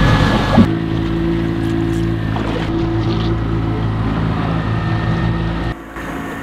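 Boat's outboard engine running at a steady, even pitch, with no change in speed; near the end the sound drops in level.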